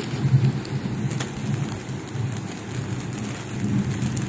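Heavy rain falling steadily, with a low rumble of thunder underneath.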